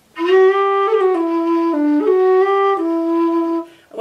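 Low whistle playing a short melodic phrase of held notes, with quick slides and finger flicks between them, stopping shortly before the end.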